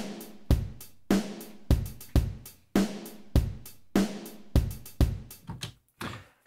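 A programmed MIDI drum-kit loop in 19/16 plays back, with kick, snare and hi-hat in a repeating pattern. Each bar ends with three extra sixteenth notes, each marked by a hi-hat.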